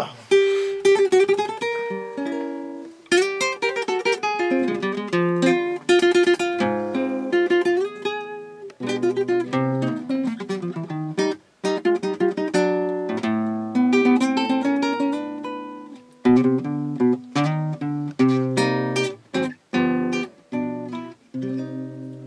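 Solo classical nylon-string guitar playing a tango introduction, plucked melody lines and accented chords with short pauses between phrases.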